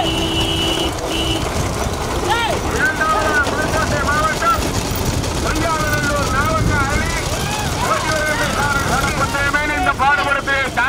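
Men's voices shouting over a low rumble, with a steady horn-like tone during about the first second that then cuts off.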